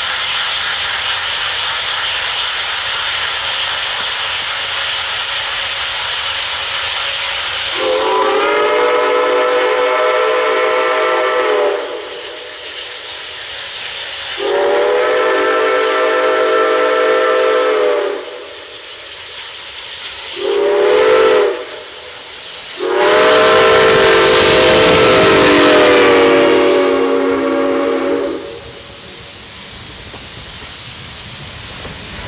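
Steam locomotive (ex-Canadian National 0-6-0 #7470) hissing as it works toward the camera. Then its steam whistle sounds long, long, short, long, the grade-crossing signal. The last blast is the loudest, with the rumble of the engine close by.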